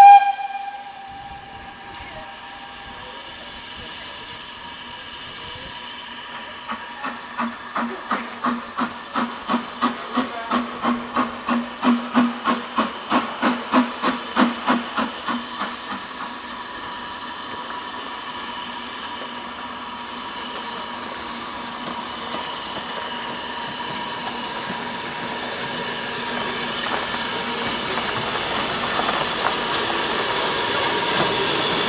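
A BR Standard Class 4MT 4-6-0 steam locomotive: a short, loud whistle blast at the start. Then about ten seconds of exhaust chuffs at roughly two a second, growing louder and then stopping. After that the engine rolls in with a steady hiss and rail noise that grows louder toward the end.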